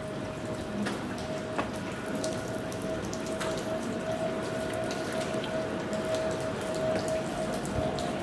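Rain dripping and pattering on wet stone paving, a steady hiss broken by many irregular sharp drips. A thin steady tone hums underneath throughout.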